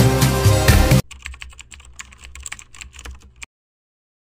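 A pop song cuts off abruptly about a second in. Faint, rapid, irregular clicks of keyboard typing follow for about two and a half seconds, then stop.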